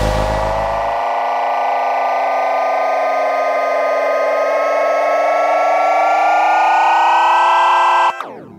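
Electronic music ending on a sustained synth chord: a stack of held tones that slowly waver up and down in pitch over a steady lower note. A deep bass note drops out about a second in, and the whole sound cuts off suddenly near the end.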